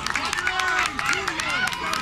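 Crowd of many voices talking and shouting over one another at a youth football game, with frequent sharp clicks mixed in.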